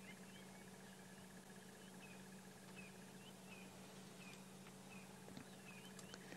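Near-silent bush ambience: a bird chirping faintly and repeatedly, short rising chirps about two a second, over a low steady hum.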